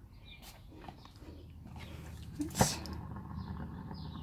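A vinyl record being set down and pressed onto a lazy Susan, with one sharp knock about two and a half seconds in, over a low steady hum and a few faint high chirps.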